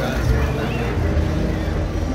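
Crowd of people talking in the background over a steady low rumble from a large-scale model train running along its track.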